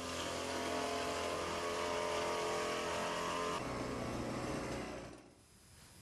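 Engine of a backpack motorized disinfectant sprayer running steadily. Its note changes about three and a half seconds in, then fades out after about five seconds.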